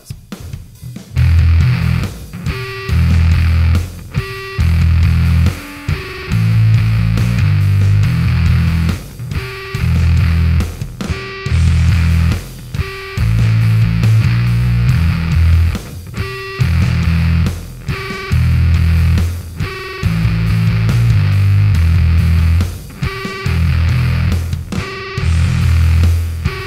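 Electric bass riff played through a Sinelabs Basstard fuzz pedal, the low notes heavily distorted, in phrases broken by short gaps every second or two.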